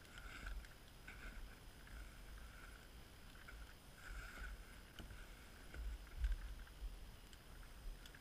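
Faint, distant scraping and swishing of snow being pushed off a cabin roof and sliding down, coming in short bursts, over a low rumble of wind on the microphone.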